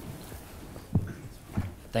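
Handheld microphone being carried and handed over: a few soft handling thumps, about a second in and again half a second later, over quiet room tone.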